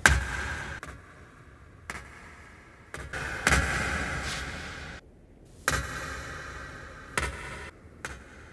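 Slow, heavy footsteps in an echoing hall, each a sharp thud followed by a long reverberant tail; about six steps at uneven spacing, the loudest at the very start.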